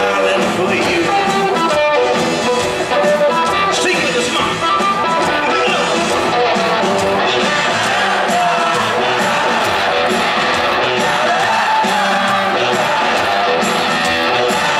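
Blues-rock band playing live in an arena: electric guitars over a steady drum beat, loud and continuous, heard from the audience.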